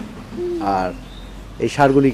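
A young bull lowing once, a short moo under a second long that rises slightly in pitch.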